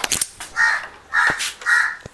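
A crow cawing three times, about half a second apart, harsh and evenly spaced.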